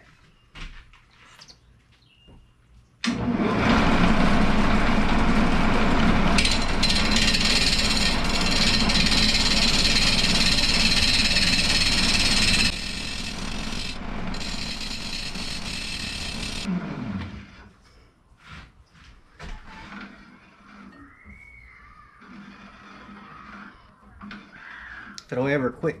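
Shopsmith lathe spinning a pecan-and-resin blank while a turning gouge roughs it out: a loud, rough cutting noise starts suddenly a few seconds in, drops in level after about ten seconds, and ends with the lathe motor winding down in a falling pitch.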